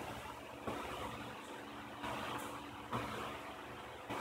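Quiet room tone with a steady low electrical hum and a few faint clicks from laptop keys being typed.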